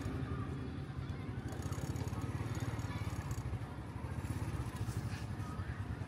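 Outdoor night-market ambience: a steady low rumble with faint voices in the background.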